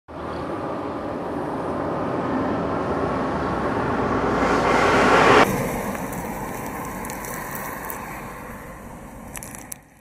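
Road noise of a vehicle on asphalt, growing steadily louder as it approaches and cut off abruptly about five and a half seconds in. After that, quieter outdoor noise fades away, with a few faint clicks near the end.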